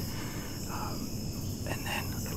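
Steady, high-pitched chorus of crickets and other insects, with a couple of faint whispered words.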